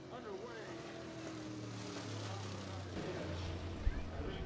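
Dirt late model race car V8 engine running at low speed, with a steady low note that grows louder about halfway through as the car draws nearer. A faint voice is heard briefly at the start.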